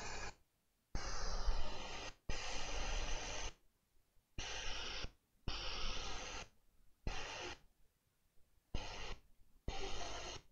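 Hot air rework station blowing through a medium nozzle at 500 degrees onto a large laptop graphics chip to reflow its solder balls. A steady airflow hiss is heard in choppy stretches of about a second, broken by sudden dead silences.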